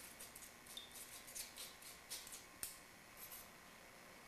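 Faint, light metallic clicks and ticks from a cocktail shaker and its strainer held over a fine-mesh strainer while a drink is double-strained into a martini glass. One sharper click comes about two and a half seconds in.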